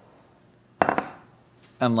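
Glass mixing bowls clinking together as one is set down on the counter: a quick double clink with a short ring, about a second in.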